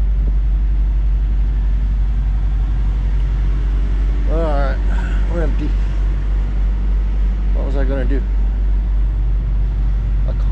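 A diesel engine idling with a steady low drone. A voice comes in briefly about four seconds in and again near eight seconds.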